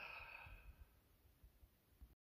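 A man's faint, breathy sigh, lasting under a second, from a hiker winded on a steep uphill climb.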